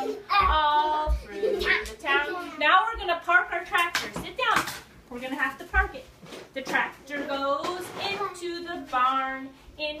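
A woman and young children singing and talking together, with a few short low thumps.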